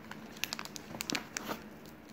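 Plastic candy wrappers crinkling as a Skittles packet and a wrapped lollipop are picked out of a box, heard as a scatter of small, sharp crackles.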